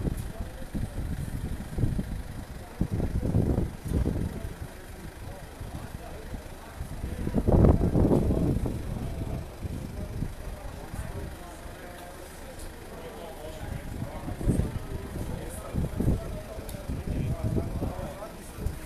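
Indistinct voices of people talking nearby, not close enough to make out words, over an uneven low rumble. The loudest surge comes about eight seconds in.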